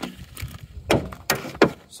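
A few light knocks and clunks, about five in two seconds, from things being handled against the aluminum boat.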